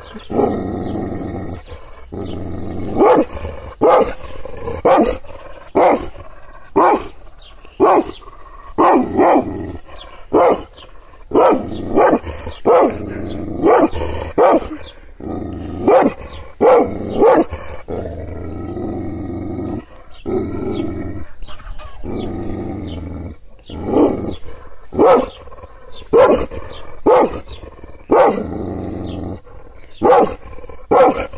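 Kangal shepherd dog barking deeply and repeatedly, about once a second in runs, with growling between the barks and a spell of growling alone about two-thirds of the way through: an angry dog provoked into defensive aggression.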